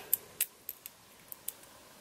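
Small metallic clicks from a rose-gold mesh watch strap's clasp being handled and clipped into place: one sharper click a little under half a second in, then a few fainter ticks.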